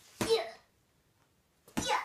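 A small child's two short, sharp huffs of effort about a second and a half apart as he punches a hanging punching bag in toy boxing gloves.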